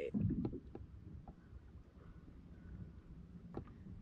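Faint low rumble of calm water moving against a plastic fishing kayak's hull, with a few soft clicks.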